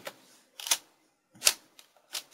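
A few separate clicks of computer keyboard keys being struck, the clearest two about a second apart.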